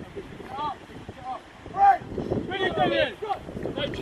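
Several voices shouting short calls around a rugby scrum, the loudest about two seconds in, over wind buffeting the microphone.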